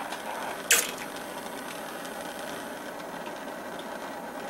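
Handheld butane torch burning with a steady hiss, its flame heating a socket cherry-hot for annealing brass cases. One short sharp click just under a second in.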